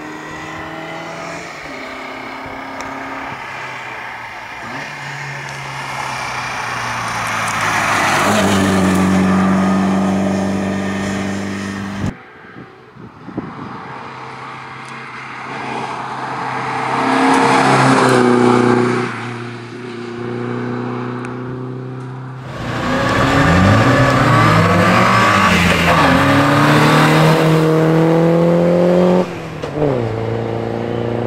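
Škoda Sport racing car's engine accelerating hard uphill and approaching, its pitch climbing in each gear and then stepping down at each gear change. The sound is three separate passes edited together, and it breaks off abruptly twice where one pass gives way to the next.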